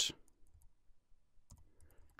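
Faint computer keyboard keystrokes, a few light clicks spread across the two seconds.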